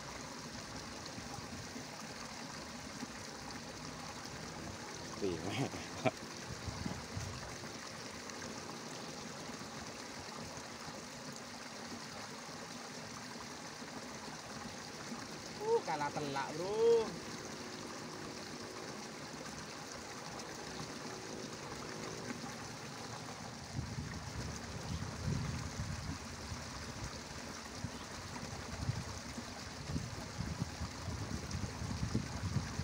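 Steady trickle of water running through a shallow, muddy irrigation ditch. A brief voice cuts in twice, about five seconds in and again about sixteen seconds in, and low rustling and knocks start about 24 seconds in.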